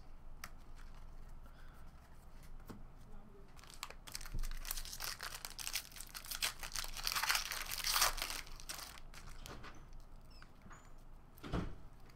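A foil Upper Deck basketball card pack being torn open and its shiny wrapper crinkled, a few seconds in and lasting about four seconds, amid light clicks and rustles of cards being handled. A single knock comes near the end.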